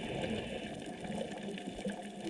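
Underwater sound picked up by a scuba diver's camera: the rush of exhaled regulator bubbles fading away, then a faint wash of water with a few scattered small clicks.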